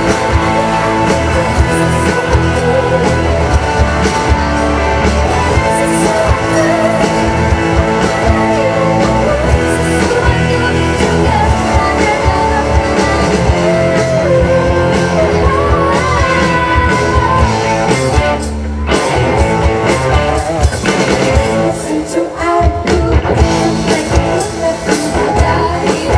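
Live pop-rock band with electric guitars, drum kit and keyboards playing, with a woman singing lead into a microphone. The bass and drums break off briefly about three quarters of the way through, then the band comes back in.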